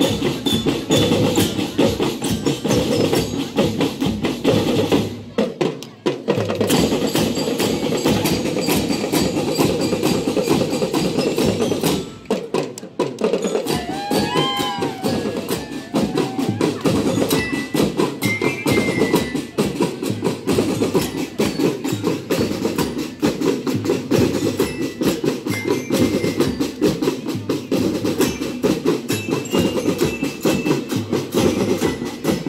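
Marching drum band of snare drums and larger drums playing a fast, dense rhythm, stopping briefly twice, about five and twelve seconds in.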